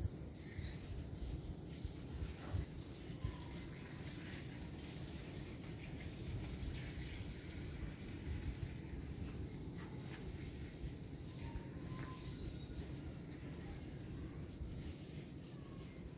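Outdoor garden ambience: a steady low rumble with a few faint, short bird chirps scattered through, some of them falling in pitch.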